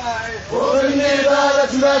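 Protesters chanting a slogan in Arabic, led by a man's voice through a megaphone. The chanting grows louder about half a second in.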